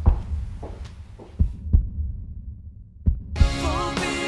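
Slow heartbeat sound effect in the dramatic score: low double thumps, three beats about a second and a half apart. Near the end the show's theme music comes in with sustained chords.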